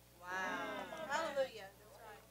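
A woman's voice calling out from the congregation in response to the preacher: two drawn-out, high cries that rise and fall in pitch.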